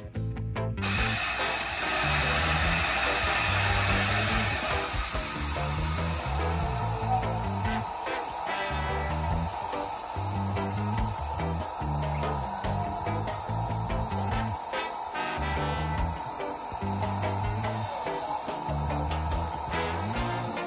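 Electric countertop blender running steadily at speed, blending a smoothie; it starts abruptly about a second in. Background music with a repeating bass line plays underneath.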